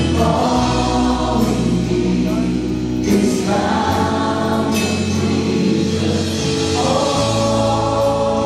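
A live worship band playing, with several singers together over acoustic and electric guitars, keyboard and drums. Cymbal crashes come at the start and about three seconds in.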